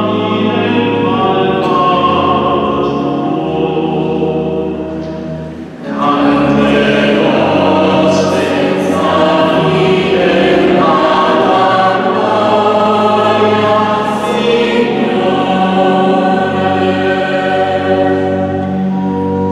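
Mixed choir of men and women singing. The sound dips briefly about five and a half seconds in, then the voices come back in fuller.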